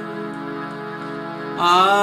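Hindustani classical singing with harmonium accompaniment. A held note continues steadily, then about one and a half seconds in a louder sung note enters, sliding up in pitch.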